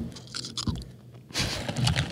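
A potato chip being bitten and chewed close to a microphone: a few small crackles at first, then a burst of crisp, dense crunching from about two-thirds of the way in.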